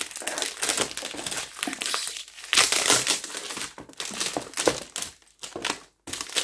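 Plastic wrapping on a perfume box crinkling as it is handled and pulled at, an irregular crackle that is loudest about two and a half to three seconds in.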